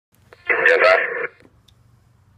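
A brief burst of radio voice traffic from a mobile two-way radio's speaker, narrow and tinny, lasting under a second. A faint low hum follows.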